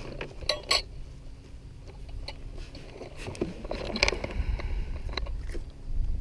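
Scattered clicks and knocks of gear being handled in the bottom of a canoe, the loudest about four seconds in, over a low wind rumble on the microphone.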